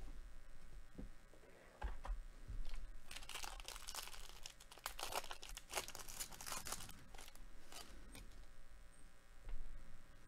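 The foil wrapper of a 2021 Bowman Draft baseball card pack being torn open and crinkled by hand: a dense, faint crackle from about three seconds in until near eight seconds, with a few scattered clicks around it.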